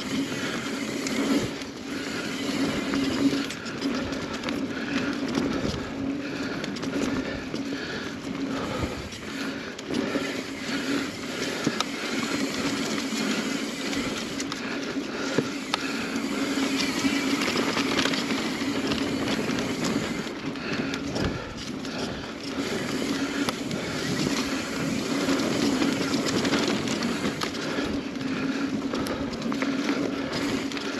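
Mountain bike rolling along a dirt singletrack trail: tyre noise on dirt and leaves with frequent knocks and rattles from the bike over bumps, over a steady low buzz.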